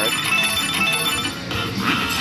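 China Shores Jackpot Streams slot machine playing its game music and chiming electronic tones, with a rising sweep near the end as the jackpot-streams feature starts.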